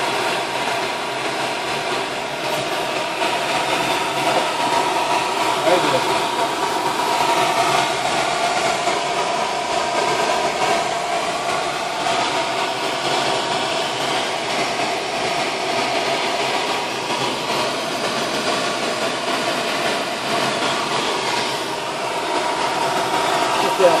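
Steady rush of air streaming over a glider's canopy, heard from inside the cockpit in flight, with a faint steady whistle on top.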